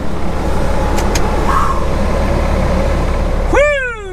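Volvo semi truck's diesel engine idling with a steady loud rumble and hiss, just brought to life after a cold-weather boost start from a pickup's battery. Two light clicks come about a second in, and a man's "woo!" near the end.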